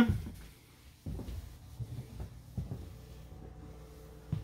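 Footsteps walking across an RV's floor: a few soft, irregular low thuds starting about a second in, with a faint steady hum joining about halfway through.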